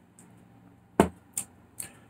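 A small wine glass set down on a hard surface, one sharp knock about a second in, followed by two fainter clicks.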